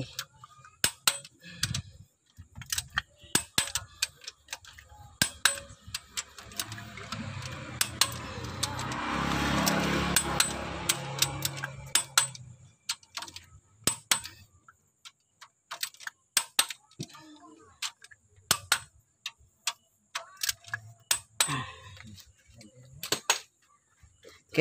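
Sharp metal clicks of a torque wrench and socket on the cylinder-head bolts of a Toyota Kijang 5K four-cylinder pushrod engine, repeated bolt after bolt, as the head bolts are rechecked at their final 7 kg torque. In the middle a rushing rumble swells and fades.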